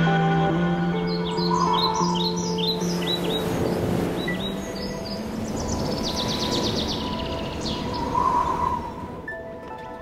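Birds chirping: a run of short falling calls in the first few seconds, then a rapid trill in the middle, over soft music with long held tones that fades near the end.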